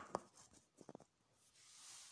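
Near silence in a small room, broken by a sharp click just after the start and a few faint ticks about a second in: handling noise from the camera being set up and the person moving close to it.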